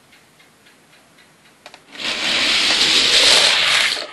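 Die-cast Hot Wheels cars racing down a plastic track: a couple of small clicks, then about two seconds of loud rolling rush as the cars run down the lanes, cutting off near the end as they reach the finish.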